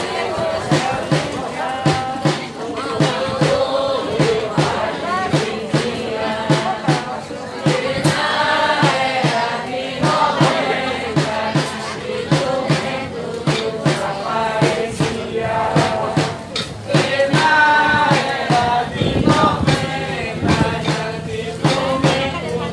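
A group of voices singing a folk song together over a steady percussive beat of about two strikes a second.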